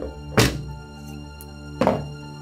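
Two knocks about a second and a half apart as a plastic water bottle and a drinking glass are handled and set down on a table, over steady background music.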